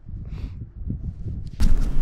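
Low rumble of wind and handling noise on a worn action camera's microphone as the wearer walks, with a few faint ticks. A louder rush of noise sets in about a second and a half in.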